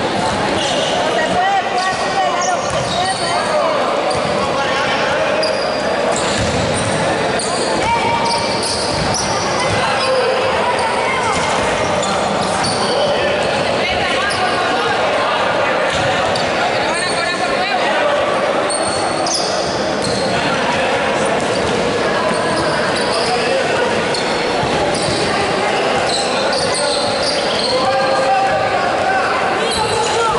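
Basketball game sounds in a large gym hall: a basketball bouncing on the wooden court, short high sneaker squeaks, and players and spectators calling and chattering over a steady hall din.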